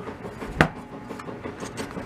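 A single sharp knock about half a second in, from the car stereo's sheet-metal top cover being lifted off and handled; otherwise only faint room noise.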